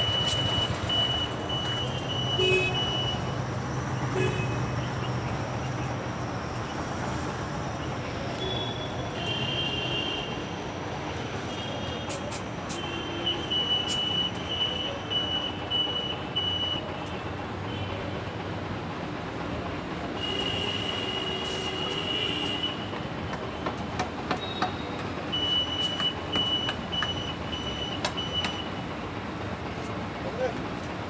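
Traffic noise from vehicles waiting in a queue, with a steady low hum for about the first ten seconds. High beeps come several times, and a few sharp clicks are heard.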